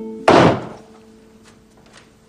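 A door shuts with a single loud bang about a quarter second in, dying away within half a second, as soft music with held notes fades.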